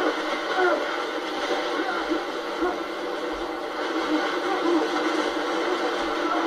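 Heavy water splashing and churning in a film soundtrack, with people yelling over it.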